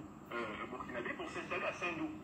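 Speech played back through a smartphone's speaker.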